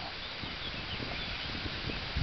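Quiet outdoor background: a steady hiss with faint low rustling and a few faint high chirps, with no distinct event.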